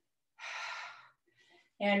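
A woman's audible breath, under a second long, taken during a weighted squat exercise, followed near the end by the start of speech.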